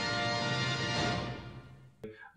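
Music with held notes, fading out over the last second.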